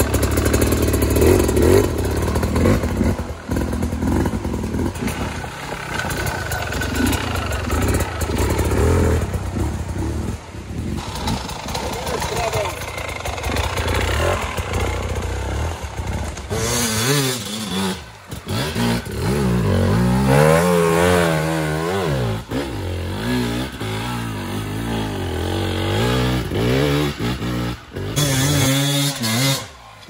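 Off-road enduro motorcycle engines revving hard and unevenly under load as the bikes claw up a steep slope, the pitch rising and falling in quick bursts of throttle, most plainly in the second half.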